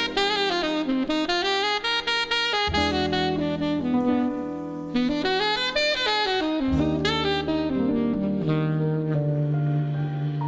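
Small jazz combo led by a saxophone playing quick melodic runs over drums and lower accompaniment. Near the end it settles onto long held notes as the piece closes.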